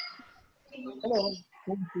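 People's voices over a video call: low, indistinct talk, with one short voiced sound that rises and falls in pitch about a second in.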